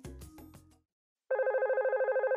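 Background music fading out in the first second. After a short silence, a telephone starts ringing a little over a second in, a rapid electronic trill.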